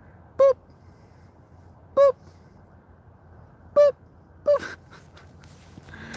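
A dog barking four times: short single barks about one and a half to two seconds apart, the last two closer together.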